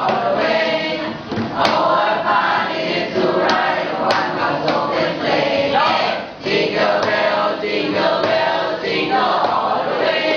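A class of students reading aloud together in chorus, many voices overlapping in phrases broken by brief pauses.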